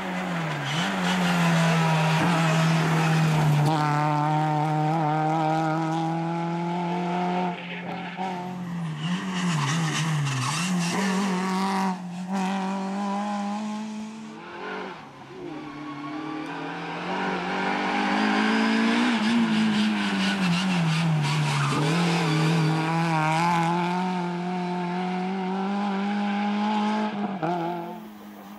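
Renault Clio rally car's engine running hard at high revs on a stage. The pitch is held mostly steady and dips briefly several times as the revs drop, then climbs again.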